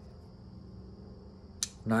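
A single sharp click from a Camillus Carbide Edge folding knife as its blade is worked closed, about one and a half seconds in, against quiet room tone.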